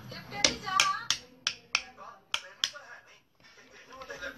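Rocker switches on a wall switchboard being clicked, about seven sharp clicks in the first three seconds.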